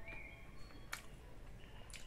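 Faint mouth sounds of a person chewing a slightly rubbery bite of smoked meat, with two soft clicks, about a second in and near the end.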